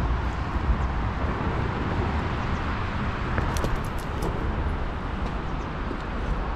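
Steady rushing of water on a small river, with a few faint clicks about halfway through.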